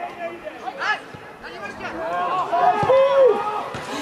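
Pitch-side spectators' voices talking and calling out over one another, with a louder held shout about three seconds in.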